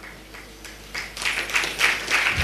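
Audience applause, beginning about a second in and growing louder.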